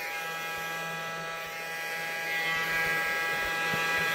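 Small battery-powered insect vacuum (ant aspirator) switching on abruptly and running with a steady electric buzz, growing a little louder in the second half.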